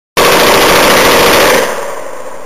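Browning M1919 belt-fed machine gun firing one long automatic burst of about a second and a half, starting abruptly, with its echo dying away at the end.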